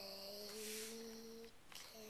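A young boy's voice holding a steady hummed "mmm" for about a second and a half, a hesitation sound while he works out the next word he is reading aloud.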